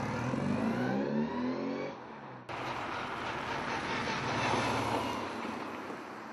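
Car engine pulling away and accelerating, its pitch climbing and dropping as it goes up through the gears. About two and a half seconds in, the sound cuts abruptly to a steady rushing noise.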